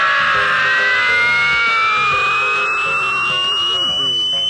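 Comic sound effect in a film soundtrack: a long electronic whine that slowly rises in pitch and then holds, with other tones sliding downward beneath it.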